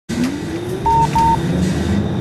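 Busy railway station concourse ambience with a slowly rising electric whine, and two short identical electronic beeps in quick succession about a second in.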